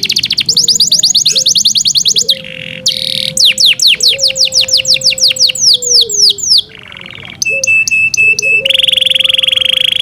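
Yorkshire canary singing: fast runs of rapidly repeated notes and sweeping trilled phrases, a short series of clear high notes about three-quarters of the way in, and a buzzy roll near the end.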